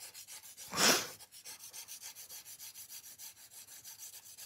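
Nail file rubbing along the side of a gel nail in quick, even back-and-forth strokes, with one louder scrape about a second in.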